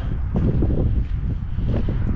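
Wind buffeting the microphone: a low, gusting rumble.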